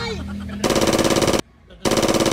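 Two bursts of rapid automatic gunfire, a machine-gun sound effect: the first starts about two-thirds of a second in and lasts under a second, the second, shorter burst comes near the end.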